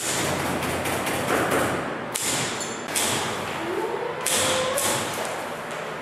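Royal typewriter being typed on rapidly: a dense run of clacking key strikes, with several louder, sharper strokes about two, three and four and a half seconds in.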